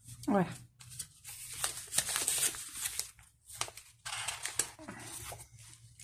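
Paper pages of a colouring book rustling and sliding under the hands in irregular bursts as the book is handled and a page is lifted at its corner.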